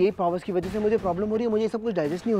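A person's voice speaking over a steady low hum.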